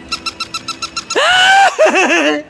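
Battery-operated plush toy dog giving off a rapid run of electronic chirps, about eight a second. About a second in comes a strong, drawn-out, voice-like call that rises and then holds.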